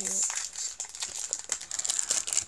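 Foil booster-pack wrappers crinkling and rustling as they are handled, in a run of quick, irregular crackles, after a voice exclaims "dear God" at the start.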